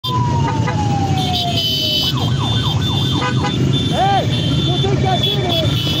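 Motorcycle engines running steadily in a slow, dense pack, with a siren sounding over them: a long falling tone, then a run of quick up-and-down sweeps and a single whoop about four seconds in.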